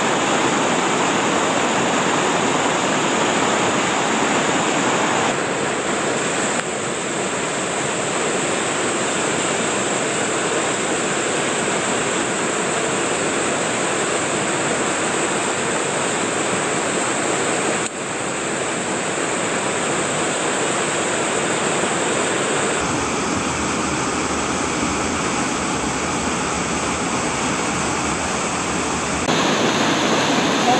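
Rushing water of a mountain gorge stream and its cascades, a steady noise that changes abruptly in tone several times, about 5, 7, 18, 23 and 29 seconds in.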